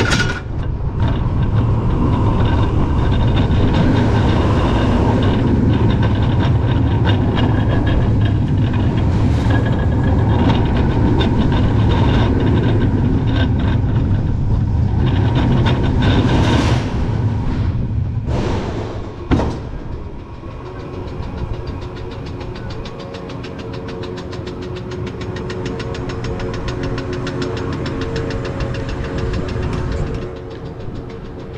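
Vekoma Boomerang roller coaster train running its course after release from the lift spike, with a loud rumble of its wheels on the steel track and wind on the rider-mounted camera, and a few sweeping whooshes through the elements about two-thirds in. It then goes quieter, with a steady hum and fast regular clicking as the train slows and climbs the far spike.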